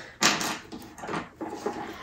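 Hands handling small craft-kit items and packaging on a desk: a short sharp rustle about a quarter second in, then softer scattered rustles and taps.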